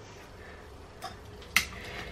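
Quiet kitchen room tone with two light clicks, a faint one about a second in and a sharper one about a second and a half in: a metal spoon knocking against the steel saucepan of fritter batter as the mixing begins.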